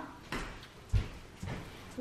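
A few soft, low thumps over faint room tone, the loudest about a second in.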